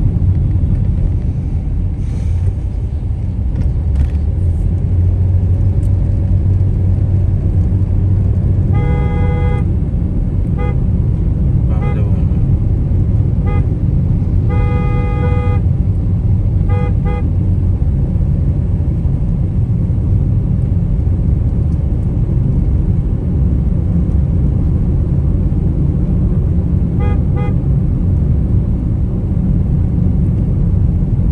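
Steady low road and engine rumble inside a moving vehicle's cabin, with a vehicle horn honking in a string of toots: longer blasts about 9 and 15 seconds in, short toots between them, and quick double toots around 17 seconds and near the end.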